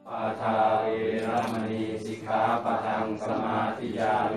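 Several voices chanting Buddhist Pali verses in unison, a steady recitation in phrases with short breaks between them.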